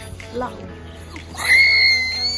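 A person's high-pitched squeal, held with a slight waver for over a second from about one and a half seconds in, after a short rising vocal sound about half a second in.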